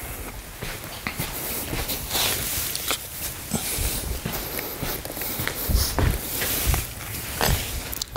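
Footsteps and clothing rustle as a person walks across artificial putting turf, with a few soft low thuds.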